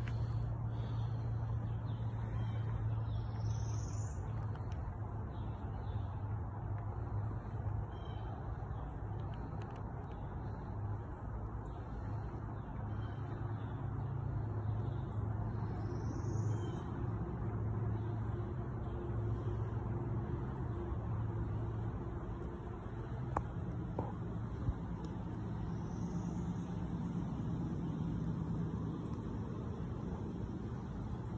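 Outdoor ambience: a steady low rumble, with a short high rising chirp three times, roughly ten seconds apart, and two faint clicks about two-thirds of the way through.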